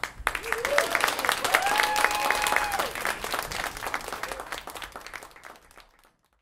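Audience clapping at the end of a ukulele song, with a voice cheering in a rising and falling whoop about one and a half to three seconds in. The clapping thins out toward the end and stops abruptly.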